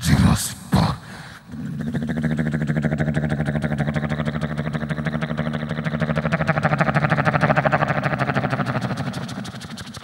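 A mimicry artist's voice into a handheld microphone: a couple of short vocal bursts, then a vocal imitation of an engine, a steady, rapidly pulsing drone that swells and then fades away over several seconds.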